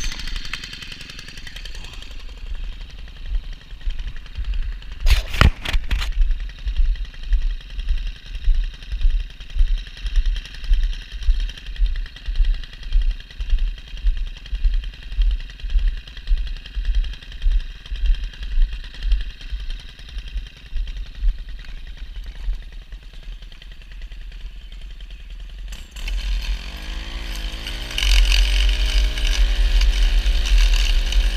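Stihl gas stick edger's engine catching on a pull of the starter cord and then idling steadily, with low thumps about once a second underneath and a few sharp clicks about five seconds in. Near the end the engine revs up and runs louder at high throttle as edging begins.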